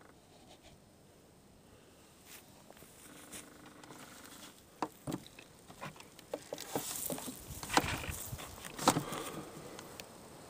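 Handling noise carried through an RC glider's fuselage, heard from the onboard camera: faint at first, then from about five seconds in a string of irregular clicks, knocks and rustles as the model is moved off the grass, loudest near the end.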